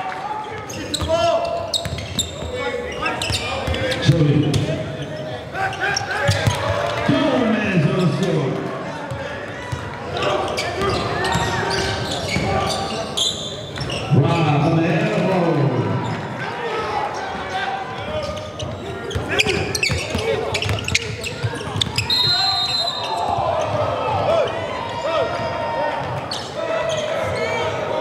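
Live basketball game sound in a gymnasium: a basketball bouncing on the hardwood floor again and again, with players and spectators shouting and talking, all echoing in the large hall.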